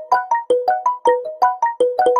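Music: a fast, bouncy melody of short electronic keyboard notes, about six a second, each struck sharply and fading quickly.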